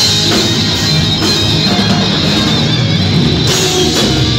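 Live hard-rock band playing loud and steady without vocals: distorted electric guitar lead over bass guitar and a drum kit.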